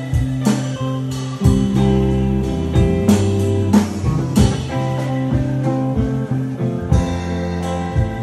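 Live band playing: guitar and keyboard over sustained bass notes, with irregular drum and cymbal hits.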